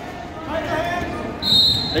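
Murmur of voices in a gym hall. About one and a half seconds in, a steady high-pitched tone starts and holds. A man starts shouting right at the end.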